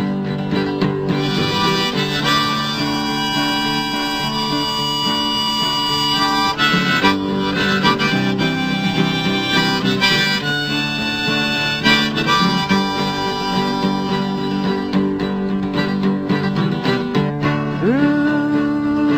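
Harmonica solo over strummed acoustic guitar: an instrumental break between verses of a folk song, with long held reedy notes and chords.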